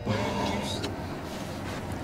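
Steady background noise inside a truck cab, with no clear sound standing out.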